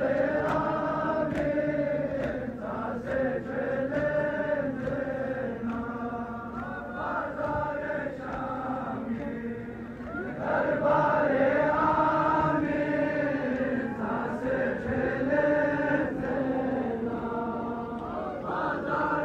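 Men's voices chanting a Balti noha, a Shia mourning lament, in sung phrases of a few seconds with short breaks between them.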